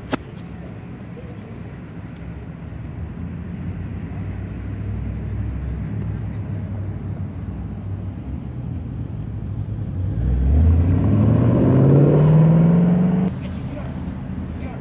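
A car's engine under hard acceleration: a low rumble that builds, then revs climbing steadily for about three seconds and cutting off sharply near the end as the throttle closes. A sharp knock right at the start.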